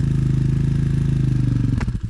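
Dirt bike engine idling steadily, then cutting off abruptly with a click near the end.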